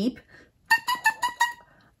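An oboe reed blown on its own, crowing in a quick run of about six short, tongued bursts, each with a steady reedy pitch. It speaks very easily with no lip pressure, but its crow sits a little low, showing the reed is still flat after the tip was clipped.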